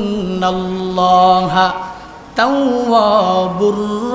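A man's voice chanting in long, drawn-out melodic notes, the sung delivery of a Bangla sermon. The voice fades down a little before two seconds in, then comes back strongly on a rising note.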